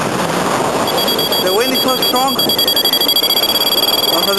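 Wind rushing over the microphone in flight under a paraglider, with a variometer's electronic beep tone coming in about a second in and holding a steady high pitch, a sign of climbing in lift. A few short vocal sounds come in the middle.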